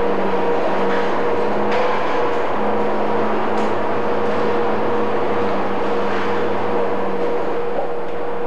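Steady factory machinery din with a constant low hum and a few faint clanks, as of a running car assembly line.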